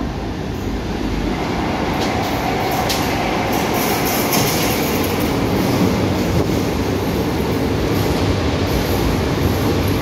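Fiat Materfer subway train running into an underground station and along the platform: a loud, steady rumble of wheels and motors, with brief sharp high-pitched squeaks between about two and five seconds in.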